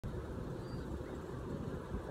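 Steady low rumble of outdoor background noise with no distinct event.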